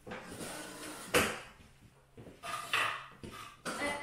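A short breathy laugh, then handling noises: one sharp knock about a second in, followed by a few softer clunks and rustles as things are moved about at a keyboard and music stand.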